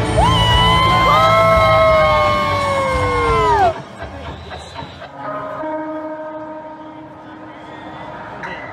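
Concert-goers close to the microphone cheering with long held calls that slide down in pitch at the end, over loud crowd noise. About four seconds in it cuts to quieter live concert music with sustained notes, heard from within the audience.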